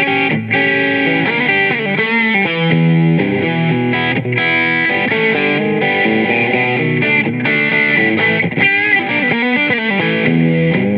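Electric guitar played through a Neural DSP Quad Cortex amp modeler running a Fender silverface Bassman amp capture. The notes and chords change every second or so, with short breaks between phrases.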